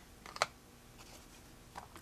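A quick run of light, sharp clicks about half a second in, then a faint tap or two near the end: small hard tools being handled and set down on the work table.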